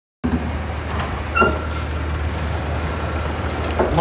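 Steady low engine rumble, such as a large ship's engine makes, with a couple of faint, brief higher tones about a second and a half in.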